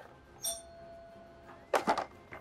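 A brief, bright chime-like ring with a faint held tone lingering under it for about a second, then a short sharp sound near the end.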